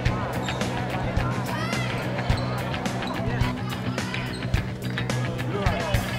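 Game sound in a gym: a basketball bouncing on a hardwood court, with short sneaker squeaks and crowd voices over a steady low hum.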